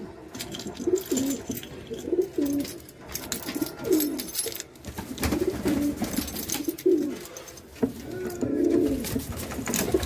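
Domestic pigeons cooing, a string of short low coos repeated throughout, with scattered light clicks.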